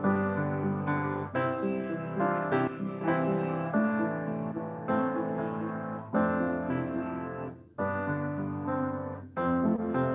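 Solo upright piano played with both hands: an improvisation over alternating F and G chords, with sustained bass notes under a moving melody. The sound dips almost to nothing for an instant about three-quarters of the way through before the playing picks up again.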